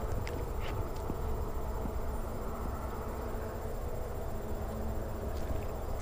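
Steady low rumble of outdoor background noise, with a few faint clicks in the first second.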